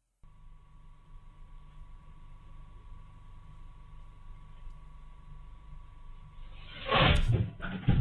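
Security-camera recording's steady background hiss with a faint steady tone, then a sudden loud noise about seven seconds in that made the viewer jump.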